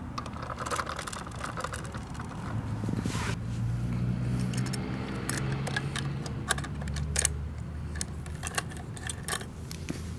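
Small clicks and light rattles of a plastic toy garbage cart being handled and hooked onto the tipper of a diecast rear-load garbage truck model, over a low hum that rises and falls in pitch partway through.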